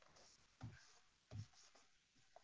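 Faint computer-keyboard typing: a few soft key taps, two slightly louder ones about half a second apart near the middle.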